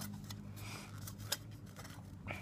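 Faint handling of plastic model-kit parts: a few light clicks and rustles, with one sharper click a little past halfway, over a low steady hum.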